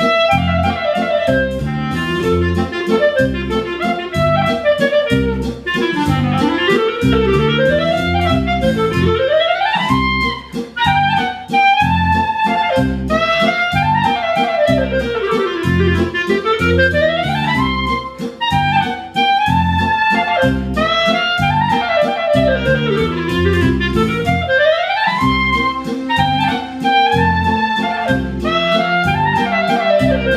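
Solo clarinet playing a waltz tune full of fast runs that sweep up and down, over a steady waltz accompaniment.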